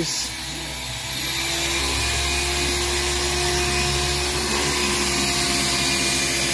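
Corded electric car polisher (buffer) running steadily with its pad on the car's painted body, at one even pitch, growing louder over the first couple of seconds and then holding level.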